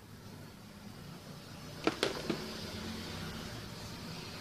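Faint steady low hum of room noise, with three small sharp clicks from handling objects on the table about two seconds in.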